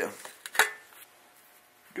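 A single sharp knock about half a second in, then quiet room tone.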